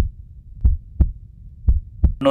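Heartbeat sound effect on a film soundtrack: deep double thumps, lub-dub, about once a second over a low hum.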